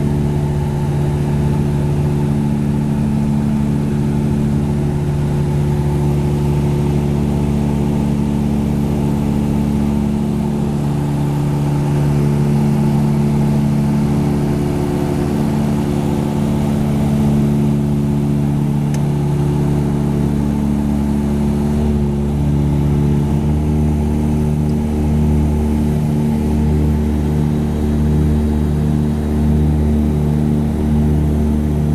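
The Tecnam P2006T's twin Rotax 912 piston engines and propellers, heard inside the cockpit in flight as a steady drone. About 23 seconds in the tone shifts and takes on a slow pulsing.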